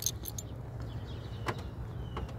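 A low steady rumble with a few short light clicks, one at the start and one about one and a half seconds in.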